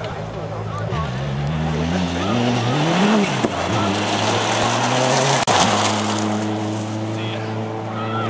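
Rally car engine revving hard as it approaches on a loose-surface stage, its pitch climbing and dropping twice as it shifts. It then passes close with a rush of noise and a sharp break about five and a half seconds in, after which the engine note holds steady.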